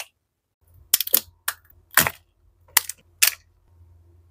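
About six sharp, irregular clicks and knocks from kitchen items being handled: a ceramic bowl of chopped chocolate and a plastic cup. A faint low hum runs beneath.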